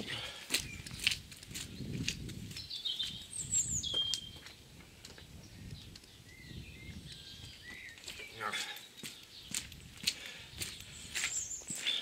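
Footsteps and small knocks, irregular and fairly quiet, with a bird chirping a few times about three to four seconds in.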